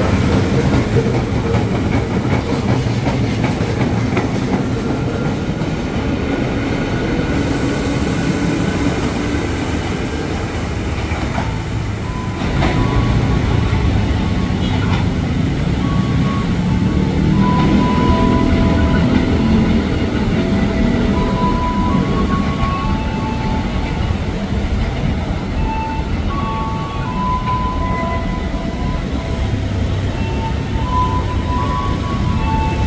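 A KRL Commuter Line stainless-steel electric train runs along the platform with a steady low rumble of wheels on rail. A faint rising whine in the first several seconds comes from its traction motors as it gathers speed. In the second half a string of short, steady tones at several pitches sounds over the rumble.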